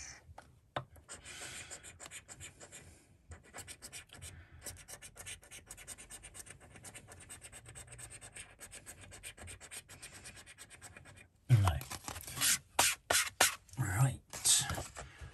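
A coin scratching the latex panels off a paper scratchcard: faint, rapid scraping strokes. Near the end come a few much louder knocks and rubs.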